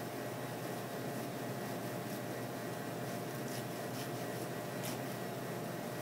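Steady room noise with a faint hum, like a ventilation fan, and a few faint ticks in the middle.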